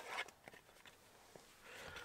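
Quiet handling noise: faint rustles and a few soft clicks of a cardboard collector's box and its card insert being handled.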